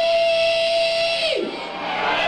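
A man's voice holding one long sung or yelled note through the PA for about a second and a half, then sliding down and breaking off, as a punk song starts.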